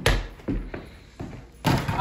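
Basketball being dribbled on the floor: a string of thuds about half a second apart, with a louder, longer knock near the end.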